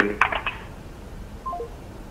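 A short electronic phone beep of three quick notes stepping down in pitch, about one and a half seconds in, heard over a live telephone call-in line. Before it, the tail of a word with a few clicks.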